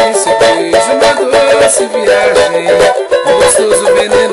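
Cavaquinho strummed in a quick, steady rhythm, moving through a sequence of chord changes as a relative-chord progression is demonstrated.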